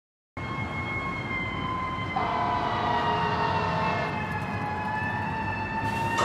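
Sirens wailing over a low city traffic rumble, starting after a moment of silence. Their pitch slides slowly downward, and a second siren joins about two seconds in.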